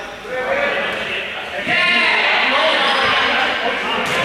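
Many players shouting and calling out over one another during a running game, echoing in a large sports hall. The voices get much louder a little before halfway.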